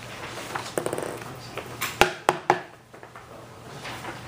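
A quick rattle of small clicks, then three sharp clicks or knocks in quick succession, over faint room noise.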